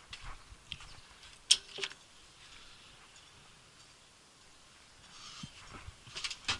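Quiet handling noises inside a parked tractor's cab: scattered small clicks and rustling, with one sharp click about a second and a half in and another just after.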